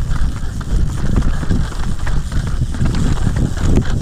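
Mountain bike riding fast down a rough dirt singletrack: a steady low rumble from the tyres and rushing air, with a constant scatter of small clicks and rattles from the bike bouncing over dirt, stones and roots.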